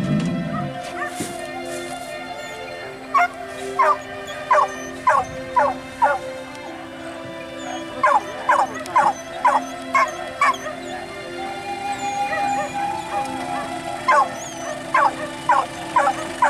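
Hunting dogs barking and yipping in three quick runs of five or six sharp barks, about two a second, over steady background music.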